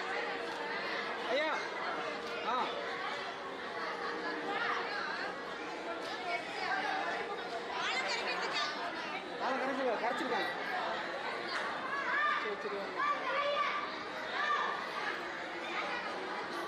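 Many guests chattering at once in a large hall, a hubbub of overlapping voices with no single clear speaker.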